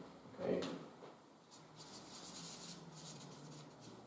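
Felt-tip marker writing on flip-chart paper, a run of short faint strokes starting about a second and a half in.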